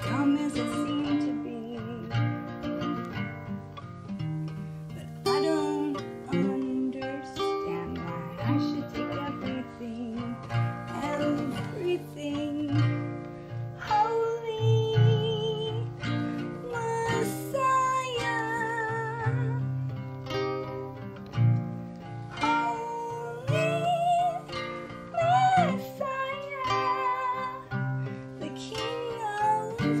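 Acoustic guitar picked and strummed in a slow song. From about halfway through, a woman's voice sings a held, wavering melody over it.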